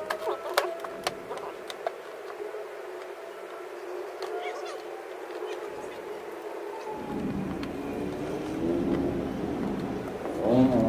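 Sharp plastic clicks and handling noise from the clips and cover of a Vespa GTS headlight assembly being worked loose, with four or five clicks in the first two seconds and quieter fiddling after. A low voice comes in near the end.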